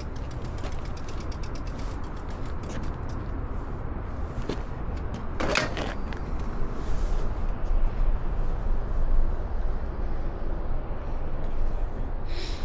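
E-bike rolling slowly over pavement: rapid ticking from the rear freewheel ratchet while coasting, thinning out over the first few seconds as it slows, over a steady low rumble. A short squeak comes about five and a half seconds in.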